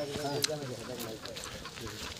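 Voices of a group of people talking as they walk, fading after about the first second, with a short high chirp about half a second in.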